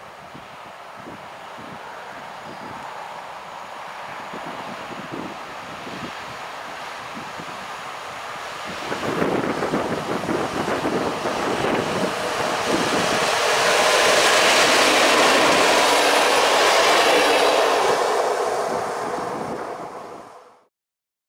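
PKP EP07 electric locomotive hauling a single wagon, approaching and passing on the track with wheels running on the rails. It grows steadily louder, swells sharply about nine seconds in, is loudest near the end, then cuts off suddenly.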